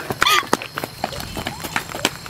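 Running footsteps on open ground, a quick series of thuds about three a second. A brief vocal sound, like a cry or gasp, comes early on.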